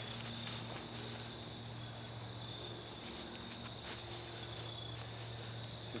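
Crickets chirping steadily in the background, with a faint steady low hum underneath and soft footsteps on grass.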